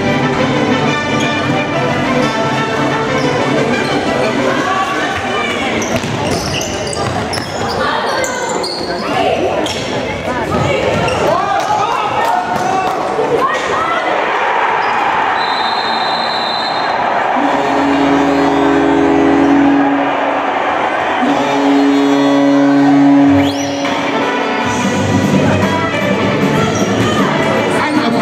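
Indoor football in a sports hall: the ball bouncing and being kicked on the hall floor amid echoing voices and shouts. A high whistle tone sounds briefly a little past halfway, and a low held tone comes twice near the end.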